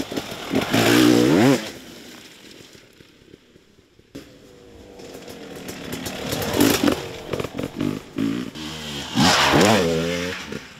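Enduro dirt bike engines revving hard on a forest climb. A loud rising rev comes about a second in and fades. Then another bike draws near with repeated bursts of throttle, loudest near the end.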